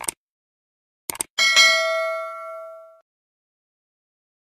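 Subscribe-button animation sound effect: a mouse click, then two quick clicks about a second in, followed by a notification bell ding that rings out and fades over about a second and a half.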